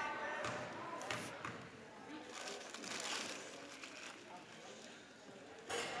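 Faint murmur of voices in a gymnasium, with a basketball bounced a few times on the hardwood floor by a player at the free-throw line before her shot.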